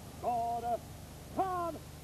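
A man's voice bellowing two drawn-out parade-ground words of command, each held about half a second, the second sliding slightly down in pitch.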